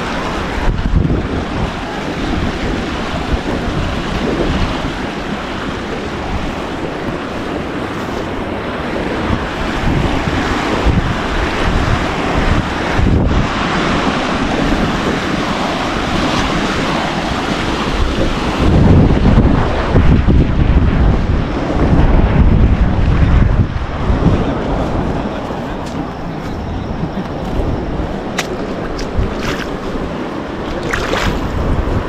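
Wind buffeting the camera microphone: a continuous rushing noise, with stronger, deeper gusts about two-thirds of the way through.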